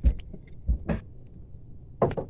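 Close handling noise as a small caught fish is unhooked by hand: a few short thumps and rustles, one at the start, two together near the end of the first second and one more at the end.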